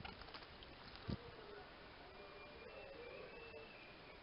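Small bird bathing in a shallow water dish: faint splashing and flicking of water in the first half second, then a single low thump about a second in. A faint wavering buzz runs through the rest.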